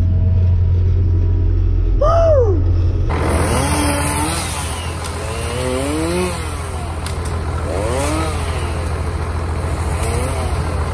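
A heavy machine's engine droning steadily inside its cab, then, after a cut, a chainsaw revving up and down again and again over a low engine hum.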